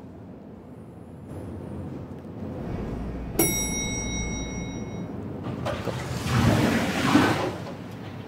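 Lift running with a low hum, then a single bright arrival chime about three and a half seconds in that rings out and fades; a louder rush of noise follows near the end.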